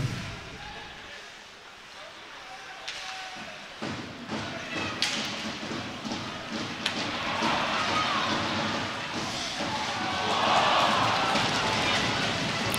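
Live ice hockey play heard from the arena: sharp knocks of sticks, puck and bodies against the boards over the scrape of play. Arena crowd noise swells in the second half.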